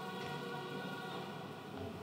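Quiet room tone: a steady low hiss with a faint even hum.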